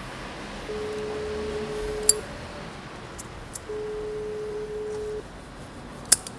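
Telephone ringback tone: a steady single-pitched beep sounding twice, each about a second and a half long, as a call rings at the other end. A brief sharp click comes at the end of the first beep.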